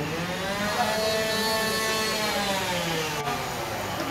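An engine revving: its pitch climbs smoothly for about a second and a half, then eases back down over the next two seconds.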